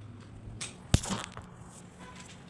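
A single sharp click about a second in, with softer handling rustles just before and after it.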